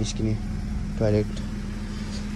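A steady low mechanical hum with one even tone, under a few brief spoken syllables.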